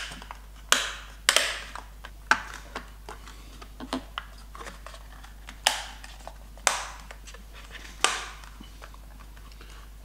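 Plastic shell of a DJI Mavic Pro drone being pressed and clipped back into place by hand: a scattered series of sharp plastic clicks and snaps, about seven, with light handling rustle between them.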